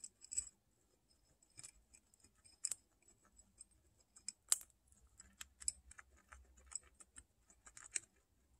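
Guinea pigs eating hard feed pellets and grain from a ceramic dish: faint, irregular crisp crunching clicks, with one sharper click about four and a half seconds in.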